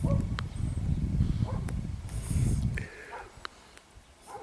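Close-up puffs and draws on a tobacco pipe, with a low rumble on the microphone and a few soft clicks. The rumble drops away a little under three seconds in, leaving it quieter.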